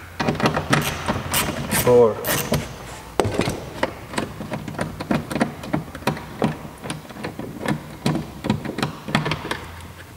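Hand ratchet clicking in short, irregular runs, with light knocks of tool on metal and plastic, as the screws holding a car door speaker are undone. A single counted word is spoken about two seconds in.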